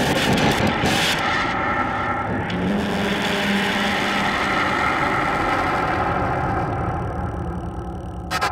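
Noise-and-glitch electronic music played live on synthesizers: a dense, grinding noise drone layered with steady tones, broken by short glitchy stutters in the first second, with a low hum coming in about two and a half seconds in.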